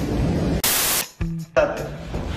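A burst of hiss-like static about half a second long near the middle, cutting off abruptly, followed by a brief low steady hum.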